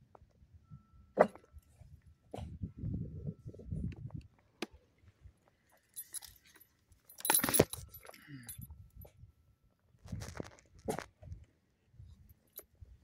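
Metal tags on a pug's collar jingling as the dog moves about, loudest in a jangle just past the middle. Scattered knocks, a sharp click about a second in, and low rustling come in between.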